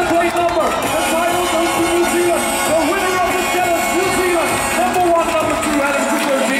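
A man's voice over an arena public-address system, calling in long drawn-out notes, with crowd noise beneath.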